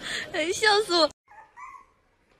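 Dog whining and yowling in loud, wavering cries that cut off abruptly just over a second in, followed by two faint, short whimpers.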